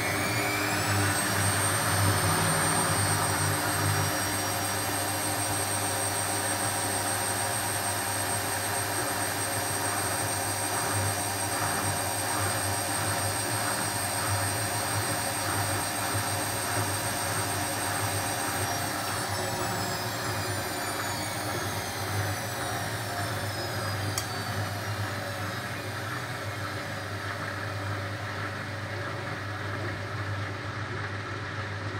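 Hotpoint WF250 front-loading washing machine spinning on its Acrylics program: the motor whine climbs in the first second or so, holds steady, then falls away from about two-thirds of the way through as the drum slows down.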